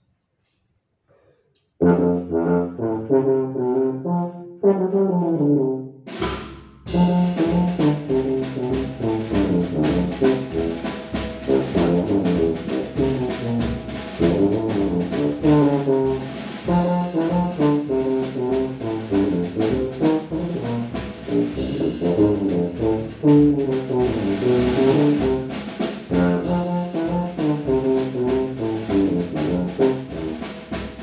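A bass tuba starts playing alone about two seconds in, a melodic line of short notes. About six seconds in, a drum kit with cymbals joins it, and tuba and drums play on together as a duo.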